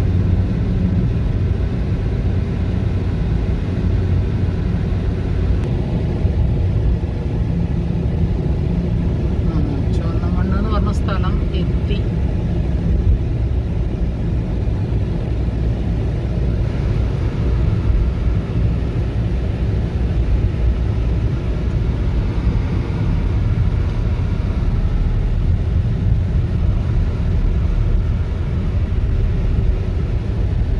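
Steady low rumble of a car's engine and tyres on the road, heard from inside the moving car's cabin. A short pitched, wavering sound cuts in about ten seconds in.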